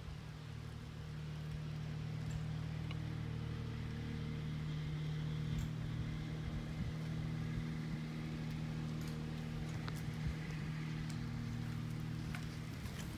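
A steady engine hum holding one pitch, growing slightly louder over the first couple of seconds.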